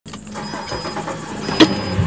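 Suzuki outboard engine started with the ignition key, starting and settling into an idle. A high beep sounds twice, and a sharp click comes near the end.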